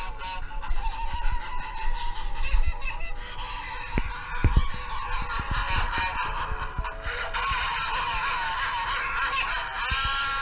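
Thrashing Clown Halloween animatronic running its routine, its built-in speaker playing clown sound effects over music: a wavering, warbling pitched sound that carries on throughout, with a few low thumps.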